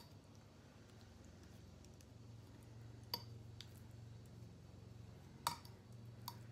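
A metal fork clicking faintly against a glass baking dish while spreading sauce over raw chicken: a few scattered taps, the loudest about five and a half seconds in. A low steady hum runs underneath.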